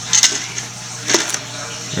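Two light clinks of small metal hardware being handled on a hard countertop, about a quarter second and a second in.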